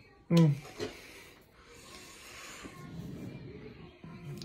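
A man's voice: one short syllable with falling pitch about a third of a second in, followed by soft breath-like hiss and quiet rustling for the rest.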